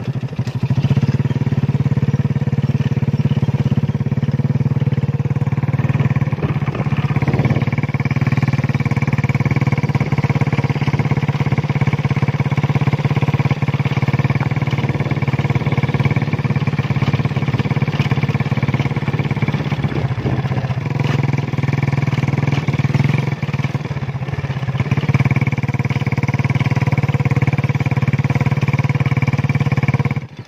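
Small motorcycle engine running at a steady, even speed while being ridden, its note holding one pitch throughout with a slight easing around two-thirds of the way through.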